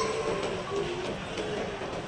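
Shopping-mall ambience in a large indoor hall: indistinct voices over a steady background noise.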